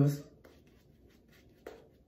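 A brief spoken 'uh', then faint, soft scratchy strokes of a shaving brush rubbing lather, with a small click near the end.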